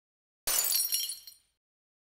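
A title-card sound effect: a sudden crash with bright, high ringing clinks, like glass shattering, that starts about half a second in and dies away within a second.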